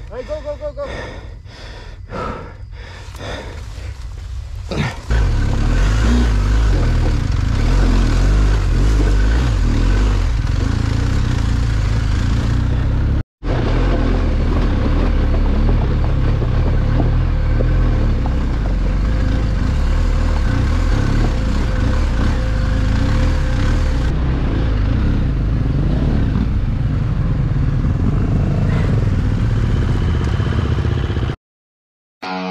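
BMW R1250 GSA's boxer-twin engine running as the bike is ridden over a rocky trail, a loud steady low rumble that starts suddenly about five seconds in. Before it, a few seconds of quieter, regular short knocks.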